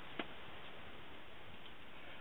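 Quiet room tone: a steady hiss with one light click just after the start.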